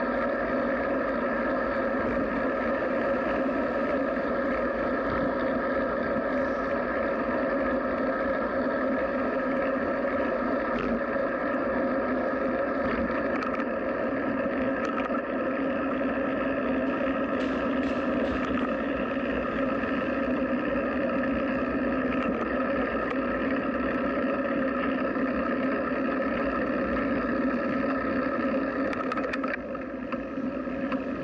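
Steady wind and rolling noise picked up by a camera mounted on a moving bicycle, with a few faint clicks, easing slightly near the end as the bike slows.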